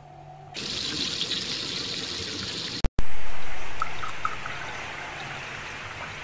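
Water pouring from a plastic pitcher into a glass cup. The pour starts suddenly about half a second in and cuts off abruptly just before the middle. A louder pour then resumes and slowly tapers off.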